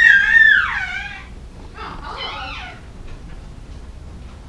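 A five-month-old baby's long high-pitched squeal that rises, holds and falls away, then a shorter, rougher squeal about two seconds in.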